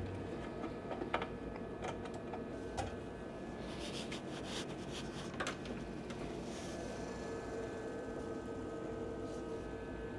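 Desktop PC running on a test power supply, its fans giving a steady whirring hum, with a few light clicks of handling. The machine starting on the test supply is the sign that its own power supply is faulty and fails to switch on.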